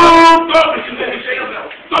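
A man's loud shout held on one note for about half a second, then a room full of voices calling out and talking, dying down.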